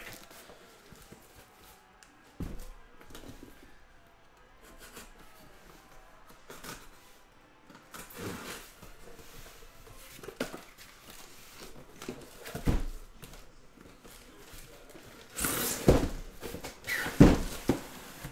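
Cardboard shipping cases being handled on a table: scattered soft knocks and scuffs, with a louder cluster of thumps and rubbing near the end as a case is lifted and moved.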